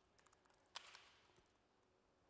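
Very faint typing on a laptop keyboard: a few soft key clicks, with one louder short sound about three-quarters of a second in that trails off briefly, over near silence.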